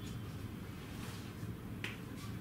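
A sharp click near the end, with a couple of fainter ticks earlier, over a steady low room hum.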